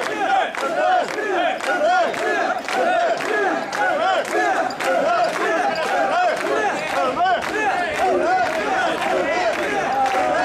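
Mikoshi bearers chanting and shouting together as they carry the shrine, many men's voices in a continuous rising-and-falling rhythm, with sharp clacks about twice a second.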